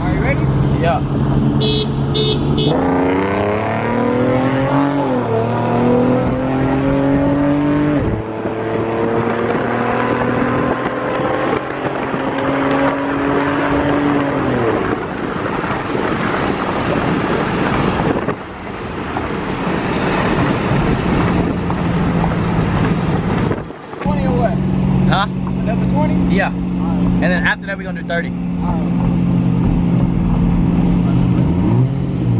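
The 2007 Ford Mustang's 4.0-litre V6, fitted with shorty headers and a cold air intake, is accelerating hard from a roll, heard from inside the cabin. The engine note climbs, drops at a gear change about eight seconds in, climbs again, and falls away around fourteen seconds as the throttle is released. It then settles into a steady lower drone over road noise.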